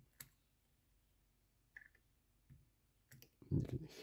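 A few faint, sharp clicks from a fountain pen's metal aerometric converter and the glass ink bottle as the pen is being filled with ink: one just after the start, another near two seconds in, and a small cluster near the end.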